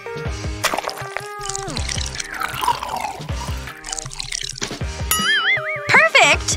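Background music with a liquid squirting and dripping sound as a syringe is pushed into a frosted doughnut, ending in a wobbling, warbling tone.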